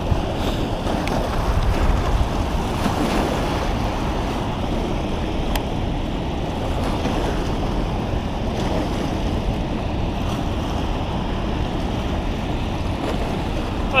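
Steady rush of white water pouring out through a dam spillway, with wind buffeting the microphone.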